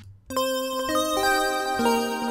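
Sylenth1 software synthesizer playing a keys preset: after a brief gap at the start, held pitched notes enter one after another and ring on together, building a chord.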